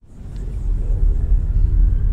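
A deep soundtrack rumble swelling up out of silence over about a second and then holding steady: the low drone that opens a dark, ominous music cue.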